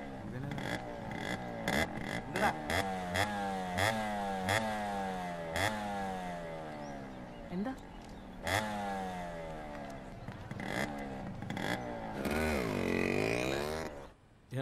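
Motorcycle engine revved again and again: its pitch jumps up with each twist of the throttle and slides back down, with sharp cracks in between. Near the end a longer rev dips and climbs again.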